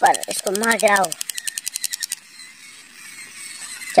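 Rapid, evenly spaced clicking like a ratchet, about ten clicks a second, which stops about two seconds in.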